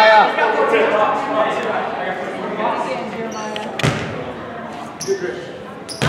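Indistinct voices in a gymnasium, with a basketball striking the hardwood floor sharply a little under four seconds in and again near the end.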